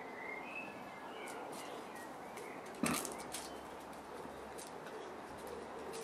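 Boerboel puppy gnawing a stick: scattered faint crunches and clicks of teeth on wood, the sharpest a crack about three seconds in. Faint bird chirps sound in the first second or so.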